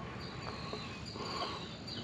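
Insects trilling steadily in a high, even tone over a faint outdoor background.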